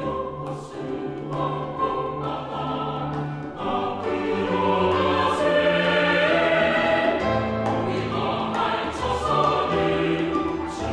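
Mixed choir singing a sacred anthem in Korean with piano accompaniment, swelling louder about four seconds in and easing back near the end.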